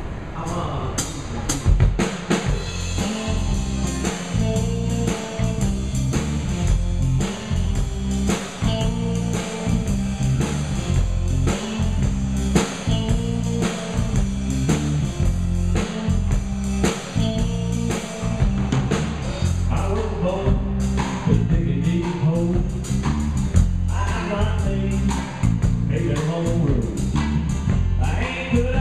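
Live band playing an instrumental passage: a drum kit keeping a steady beat under a strong bass line and acoustic guitar.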